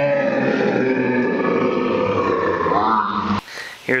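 A man's drawn-out, wavering wordless vocal noise, held for about three seconds and cut off abruptly.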